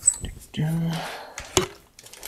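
Light clicks and a short squeak of metal parts being worked on a recumbent trike's front boom, with a brief hummed "mm" from a voice in the middle.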